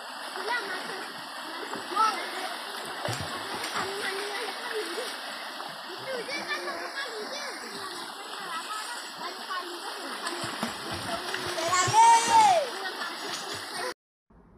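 Water splashing as children play in a shallow stream, with their voices and calls heard throughout; a loud shout about twelve seconds in.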